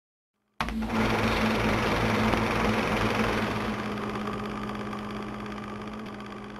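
Cinematic logo sound effect: about half a second in, a dense noisy rush starts suddenly over a low steady hum. It slowly fades as sustained musical tones begin near the end.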